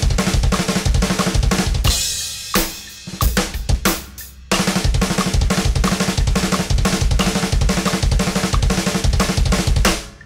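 Tama Starclassic drum kit with a double bass pedal playing a fast 32nd-note double bass fill: four strokes on the drums with the hands, then two quick bass drum strokes, repeated, and closed with a two-hands, two-feet quad. A cymbal crash rings out about two seconds in. After a short sparser stretch the fill starts again around halfway through and stops just before the end.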